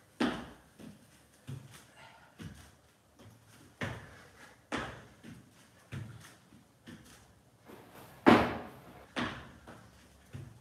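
Thumps of feet and hands landing on exercise mats over a wooden floor during bodyweight man makers: a string of single knocks, about one a second, the loudest near the end.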